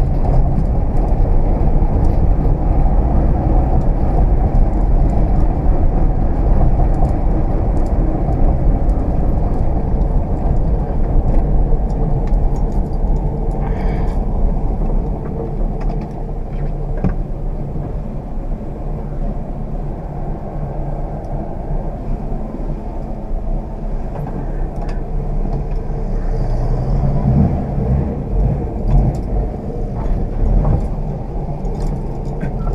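Ford Aero Willys's six-cylinder engine running under way with tyre and road noise, heard from inside the cabin as a steady low rumble. It eases about halfway through and grows louder again near the end.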